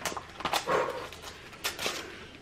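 Clear plastic packaging crinkling and crackling as it is opened by hand, with a few sharp crackles near the end. A brief soft voice-like sound comes about half a second in.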